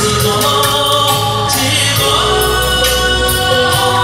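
A man singing a song into a microphone over an amplified backing track with bass and drums, with held notes and a gliding note near the middle.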